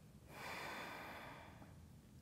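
A woman's single long, soft breath, starting about a third of a second in and fading away over about a second, taken while she holds a seated yoga stretch.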